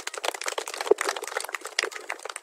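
Wind buffeting the phone's microphone, heard as dense, irregular crackling.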